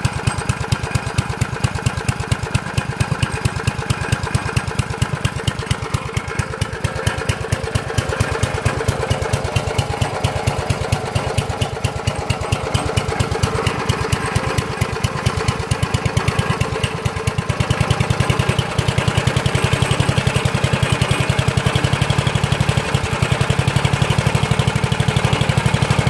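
Small air-cooled single-cylinder generator engine running steadily on biogas through a modified carburetor, a fast even string of firing pulses, a little louder in the last third.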